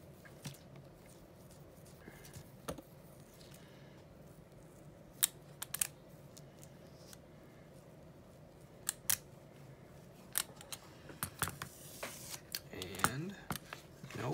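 Scattered sharp clicks and taps of a rubber brayer and its metal frame working over paper on a gel printing plate. Near the end comes a papery rustle as the print is peeled off the plate.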